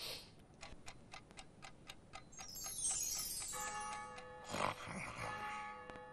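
A clock ticking quickly, about four ticks a second, then a falling cascade of bright chime-like notes that settles into a held musical chord, a cue for time passing toward midnight.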